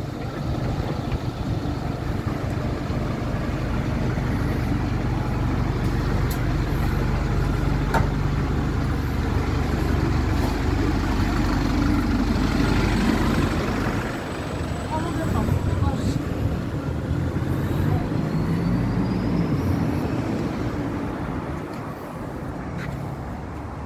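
London double-decker bus's diesel engine running at a stop close by, a steady low hum that fades about two-thirds of the way through, leaving passing road traffic.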